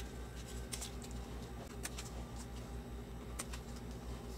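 Faint, separate snips of scissors cutting leaves off a young pepper plant, a handful of small clicks spread over a few seconds, above a low steady hum.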